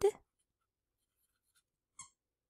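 Near silence, with a faint click near the end.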